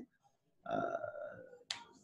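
A man's drawn-out hesitation sound, 'euh', held on one pitch for about a second, then a single short, sharp click just before he speaks again.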